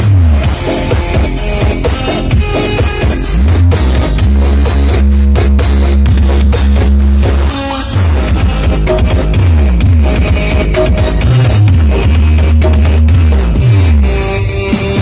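Very loud dance music played through a huge outdoor carnival sound system, carried by heavy bass: long held low bass notes, broken by repeated falling bass sweeps.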